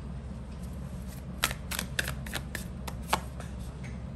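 Tarot cards being handled: a quick run of about eight sharp clicks and snaps of card against card as a card is drawn from the deck and laid down, over a steady low background hum.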